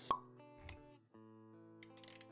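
Sound design for an animated logo intro: soft background music with a short, sharp pop just after the start and a low thud a little later. The music drops out for a moment about halfway, then returns with a few quick clicks near the end.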